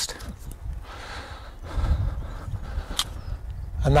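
Soft rustling and scraping of soil and compost being spread by hand around the base of a newly planted blackcurrant bush, over a steady low rumble, with a single sharp click about three seconds in.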